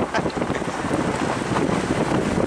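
Wind rushing over the microphone, with the steady rumble of a vehicle moving along a dirt road.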